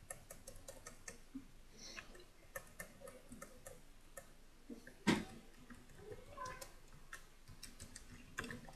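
Computer keyboard keystrokes: a scatter of faint, irregular clicks as text is deleted and retyped, with one louder thump about five seconds in.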